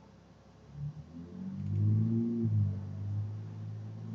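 A low hum with faint overtones, starting about a second in, swelling, then holding steady.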